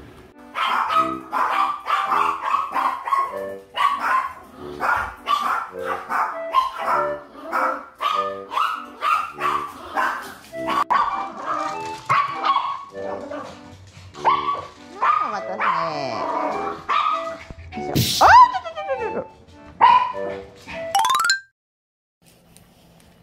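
Small house dogs barking over and over, about two barks a second, over background music, with a quick rising whistle-like glide just before the end.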